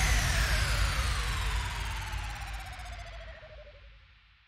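Closing effect of an electronic dance track: a descending whine sliding steadily down in pitch with a slight wobble, over a noisy wash and low rumble. The whole sound fades out evenly and dies away to silence at the very end.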